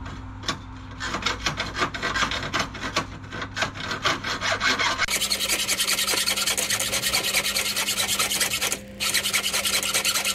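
Hand file rasping on steel in quick repeated strokes, cleaning up a cut steel edge. The strokes start about a second in, get louder and brighter about halfway, and pause briefly near the end, over a steady low hum.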